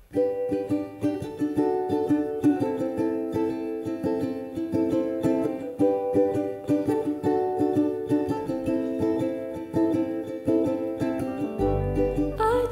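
Ukulele strummed in a steady rhythm through a chord pattern as a solo song intro. Just before the end an upright bass comes in underneath.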